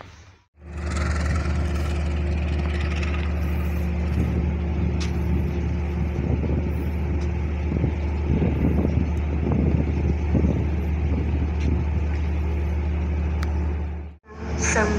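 A train's diesel engine idling nearby, a steady low hum that starts abruptly about half a second in, with some uneven rushing noise laid over it in the middle.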